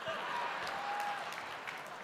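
Large conference audience applauding in a big hall, swelling at the start and slowly dying away.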